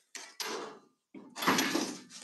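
Scraping and sliding as a black rod locker panel is handled on an aluminum boat deck: two short scrapes, then a longer, louder one a little over a second in.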